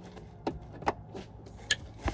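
Plastic wiring-harness connectors being handled and pushed together, giving a few light clicks and rattles; the sharpest click comes about a second in.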